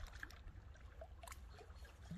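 Small lake waves lapping and splashing faintly against shoreline rocks in a run of small irregular splashes, over a steady low rumble.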